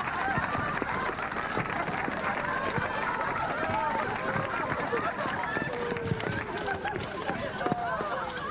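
Many overlapping voices, with quick running footsteps on pavement.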